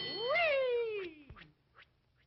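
Cartoon soundtrack: a single long meow-like cry that swoops up and then slides slowly down over about a second, starting over a brief bell-like ring. It dies away about one and a half seconds in.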